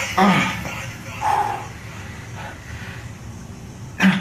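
Short, strained grunts from a man pressing a heavy barbell on a bench. The loudest comes just after the start, another about a second in, and a fainter one later.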